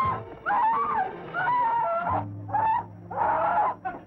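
A high-pitched voice in long, wavering notes, phrase after phrase with short breaks, with a low steady tone beneath it about halfway through.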